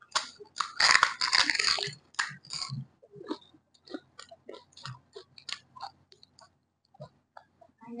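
Close-up crunching of a crisp pani puri shell, loudest and densest in the first two seconds. It is followed by a long run of short, moist chewing clicks that grow sparser.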